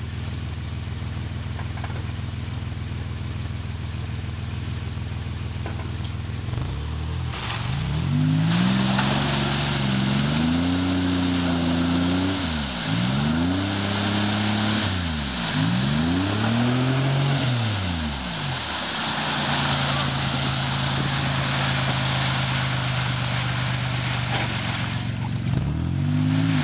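A Toyota 4Runner's engine runs steadily at first. From about seven seconds in it revs hard several times, the pitch rising and falling, while its 35-inch tyres spin in a mud pit with a rush of spraying mud and water. The truck is high-centred and cannot pull free, even with four-wheel drive engaged.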